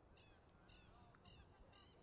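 Faint, short, high-pitched bird calls, repeated about every half second, four in all, over a low background rumble.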